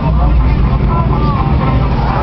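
Steady low rumble of car engines in slow street traffic, with voices calling out over it.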